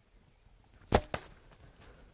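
A bow being shot at a whitetail doe: a sharp snap of the release about a second in, then a fainter smack of the arrow hitting the deer about a fifth of a second later.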